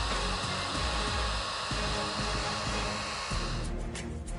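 Steady rushing-air sound effect, like air blowing from vents, over background music with a low beat. The air sound cuts off near the end.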